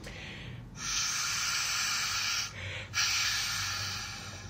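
Breath blown twice into an oboe with its double reed removed: two long, airy hisses of rushing air, each about a second and a half, with no note sounding, because without the reed the oboe cannot make a tone.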